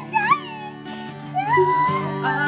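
A toddler singing in a high voice: a short sliding note just after the start, then a held note from about a second and a half in. Strummed strings accompany him, thinning out briefly in the middle.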